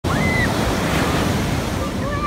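Ocean surf breaking and washing up a sandy beach, a steady rush of waves with wind on the microphone. A brief high chirp sounds near the start.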